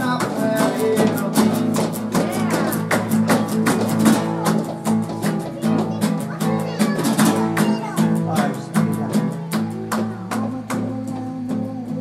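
Two acoustic guitars strummed together in a brisk, steady rhythm, playing chords.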